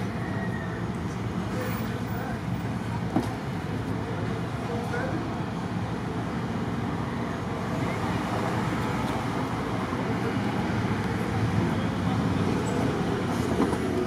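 Steady low rumble of street traffic, an even noise with no distinct events that swells a little in the second half.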